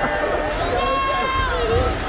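Spectators chattering in a hockey arena: many overlapping voices that no single word stands out from, with one voice held longer about a second in.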